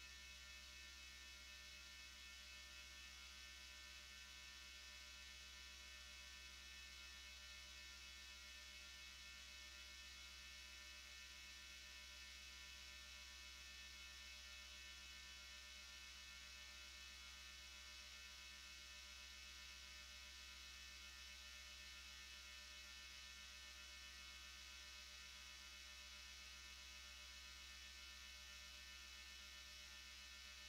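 Near silence with a steady low electrical hum.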